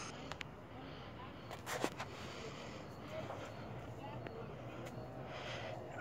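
Quiet background noise with a brief faint scuffing and a few clicks about a second and a half in.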